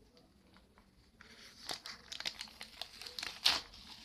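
A small sticker packet being torn open and crinkled by hand. Almost quiet for about the first second, then rustling and crackling, with the sharpest crackle near the end.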